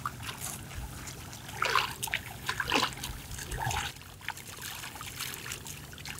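Shallow muddy water in a flooded rice paddy splashing and trickling as bare feet and hands work in it, with a few short splashes about two, three and four seconds in.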